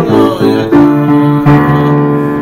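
Piano playing chords of a Purim tune, with no singing: new chords are struck about three times, and the last, about one and a half seconds in, is held and left to ring.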